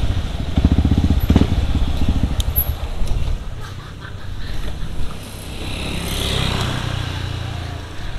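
Yamaha WR155R single-cylinder engine running at low speed, its pulsing strongest in the first three seconds, then quieter as the bike slows to a stop. A hiss swells and fades in the second half.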